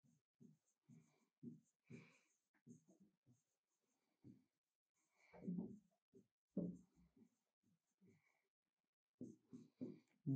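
Faint scratching and tapping of a stylus writing on a tablet, in short irregular strokes, with two slightly louder strokes about five and a half and six and a half seconds in.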